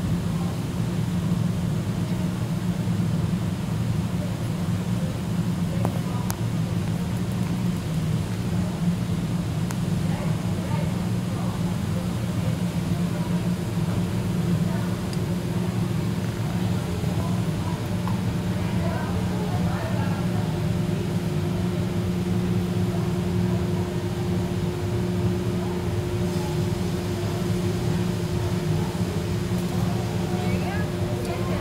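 A steady low machine hum with several pitched layers, running evenly. A couple of light clicks come near the first third, and a thin higher tone joins about two-thirds of the way in.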